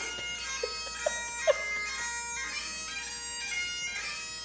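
Highland bagpipe music playing at moderate level: steady drones under a chanter melody that steps from note to note.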